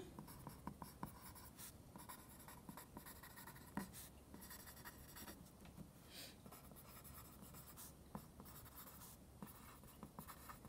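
Faint scratching of a pencil writing on lined paper, in short, irregular strokes with small taps.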